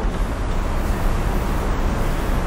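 Aerosol can of thermal spring water spraying a continuous hiss of fine mist onto a face, over a low rumble.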